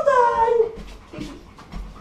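German Shepherd giving a loud excited whine that falls in pitch over about half a second, followed about a second in by a shorter, lower sound.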